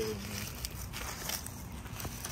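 A few soft footsteps and scuffs over steady outdoor background noise, right after a man's last spoken word.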